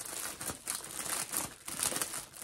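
Plastic packaging of a cross stitch kit crinkling and rustling in irregular bursts as it is handled.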